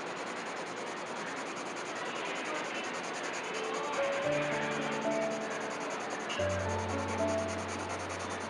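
Graphite pencil sketching on sketchbook paper, a steady scratchy rubbing. Soft background music with held notes comes in about halfway.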